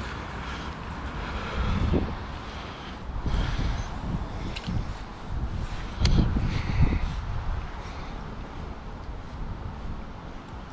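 Wind buffeting the microphone with an uneven low rumble, in gusts about two seconds in and again about six seconds in, with a few faint ticks.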